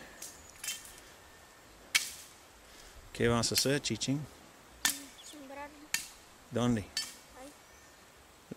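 Short snatches of talk with a few sharp clicks in between, the first about two seconds in and two more close together a little before the end.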